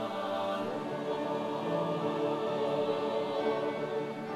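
Mixed choir of men's and women's voices singing long, held chords.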